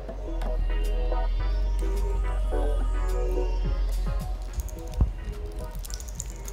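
Background music with a steady low bass drone under a stepping melody. A single sharp knock comes about five seconds in.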